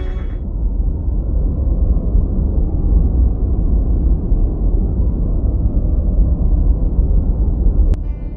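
Music drops out in the first half second, giving way to a loud, steady low rumble with no tune. The rumble cuts off suddenly near the end.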